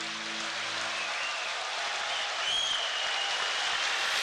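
Audience applauding in a hall, an even clatter of clapping. Low music underneath fades out in the first second.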